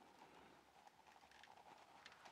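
Near silence: room tone, with only a few faint ticks.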